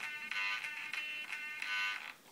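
Airtronics 94761Z digital servo buzzing high-pitched as its motor strains to hold position against finger pressure on the output arm, in three spells with short breaks, stopping near the end.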